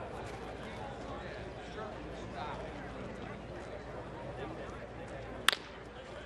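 Low ballpark crowd murmur, then a single sharp crack of a wooden baseball bat striking the ball about five and a half seconds in, sending a ground ball to shortstop.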